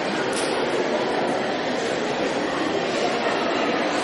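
Steady crowd noise from an audience, with a brief click about a third of a second in.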